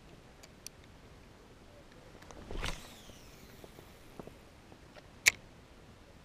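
A spinning rod swished through a cast about two and a half seconds in, followed by a hissing fall-off. Near the end comes one sharp click, the loudest sound, with a few faint ticks early on.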